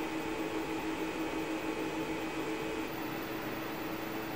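Steady electrical hum from a plasma tube and its signal equipment driven by beating square waves: one constant mid-pitched tone over an even hiss.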